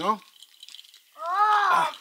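A short wordless vocal sound from a high voice about halfway through, its pitch rising and then falling, after a stretch of faint light clicking.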